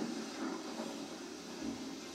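A television's film soundtrack playing across the room: a steady wash of noise with a faint low hum under it and no speech or music.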